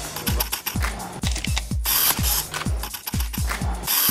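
DSLR camera shutter firing again and again in quick, uneven succession, each click carrying a short low thump.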